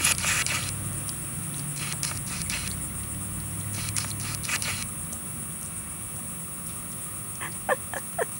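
Quiet outdoor background: a steady low hum under a steady high hiss, with a few faint clicks in the first half. Two short, yelp-like calls come near the end.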